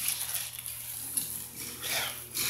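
Faint handling noises, light knocks and rustles, as a wrapped roll of PVC vinyl is shifted on a steel diamond-plate floor scale.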